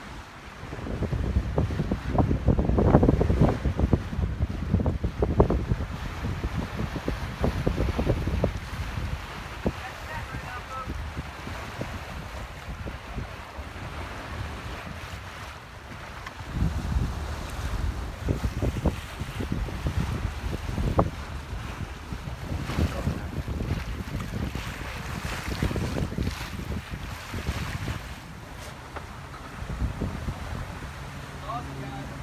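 Wind buffeting the microphone in gusts over the wash of water around a sailing boat under way; the buffeting is heavy through the first third and again through much of the second half, calmer in between.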